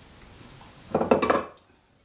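Short clatter of a metal turning tool being handled and put down, about a second in and lasting about half a second.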